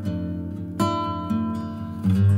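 Background music: acoustic guitar picking, with a fresh plucked note just under a second in.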